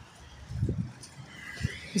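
Soft, irregular low thumps and scuffs of footsteps on a wet gravel verge, mixed with phone handling noise as the walker crouches down.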